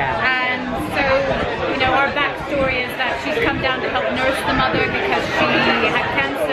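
Speech only: a woman talking close to the microphone, with the chatter of a crowd behind her.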